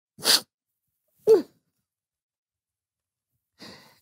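A man's short, wordless vocal sounds: a breathy sniff-like intake, then about a second later a brief whimper that falls in pitch, with a faint breath near the end.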